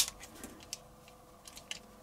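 Plastic parts of a Transformers Studio Series Devastator component figure clicking as its track section is moved back down: one sharp click at the start, then a few faint ticks.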